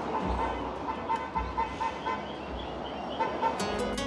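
A quick string of short, high-pitched beeps, about five a second, then two more near the end, over street noise and background music.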